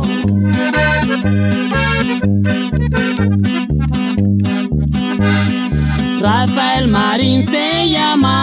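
Norteño corrido instrumental passage: a button accordion plays melodic runs over a steady, evenly pulsing bass and guitar rhythm.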